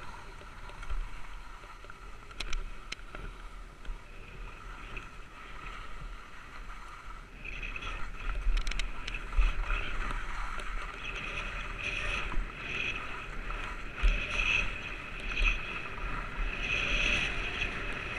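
Skis sliding and scraping over packed snow, a steady hiss with occasional sharp clicks, growing louder from about seven seconds in with frequent short surges.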